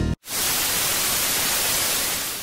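Steady hiss of television static, a white-noise sound effect, starting a fraction of a second in just after the background music cuts off.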